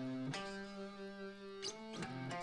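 Guitar chords strummed softly and left to ring, with a new chord struck about a third of a second in and another near the end, as the I–V–vi–IV pop progression is worked out on the instrument.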